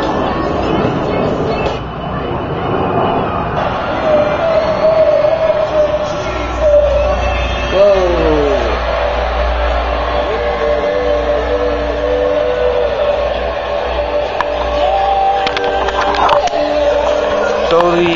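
Music played from a Palm Pilot through a pair of small battery-powered portable speakers.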